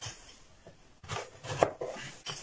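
Thin wooden box parts and strips handled on a wooden workbench: quiet at first, then a few light wooden knocks and scrapes in the second half.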